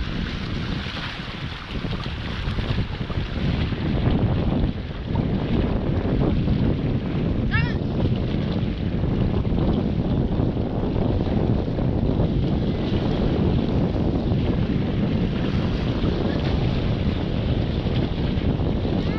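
Wind buffeting the microphone, a steady low rumbling that masks most other sound, with the sea washing against the rocks beneath it.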